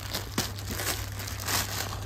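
Clear plastic packaging crinkling in irregular crackles as a folded cloth suit piece is pulled out of it, with the fabric rustling against the plastic.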